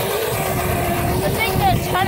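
Razor E100 Glow electric scooter's motor whining at one steady pitch while it rides over grass, over a low rumbling noise.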